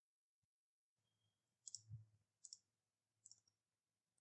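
Near silence with a few faint computer mouse clicks, mostly in quick pairs, starting a little before halfway through.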